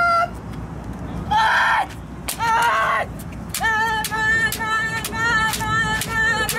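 Kendoka shouting kiai: three short shouts in the first three seconds, then from about three and a half seconds in one long held shout over a quick run of bamboo shinai strikes, about two to three clacks a second, as in a repeated-strike drill.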